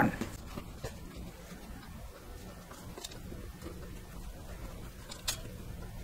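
Faint rustling of cotton quilting fabric being handled and pinned on a cutting mat, with a few light clicks spread through.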